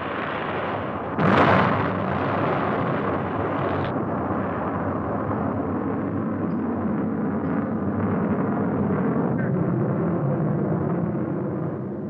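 Atlas rocket booster exploding on the launch pad: a sudden, louder blast about a second in, then a long, steady roar from the burning fireball.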